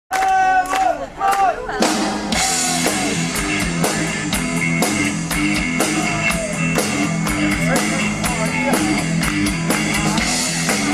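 Live rock-and-blues band playing: electric guitar, bass and a drum kit keeping a steady beat of about two strikes a second. A voice, sung or called out, leads for the first couple of seconds before the full band comes in.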